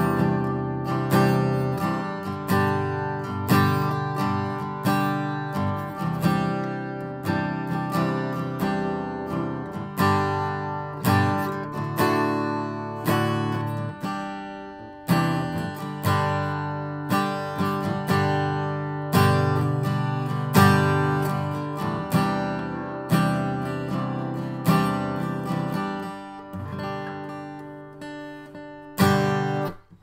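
Sigma DM-15+ dreadnought acoustic guitar strummed in a steady rhythm through a chord progression, with no singing; the last chord is struck near the end.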